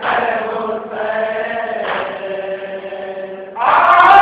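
Male voices chanting a nauha, a Shia mourning lament, in long held notes phrase after phrase. About three and a half seconds in, the voices become much louder as more of the crowd joins.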